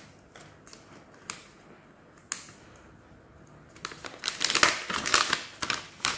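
Sealed plastic packaging pouch crinkling as it is handled and opened: a few single crackles at first, then a dense burst of crinkling from about four seconds in.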